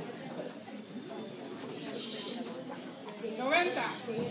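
Indistinct, low talk from a waiting group of people in a hall, with a short hiss about halfway and one louder voice with a sweeping pitch near the end.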